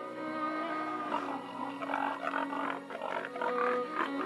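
Pigs grunting from about a second in, over soft background music with long held notes.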